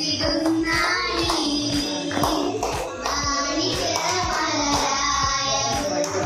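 A group of young girls singing together into a microphone, amplified through a PA speaker, with a steady beat underneath.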